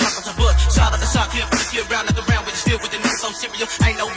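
Memphis underground rap beat with deep 808-style kick drums that drop in pitch on each hit. A long held bass note comes in about half a second in, with rapping over the beat.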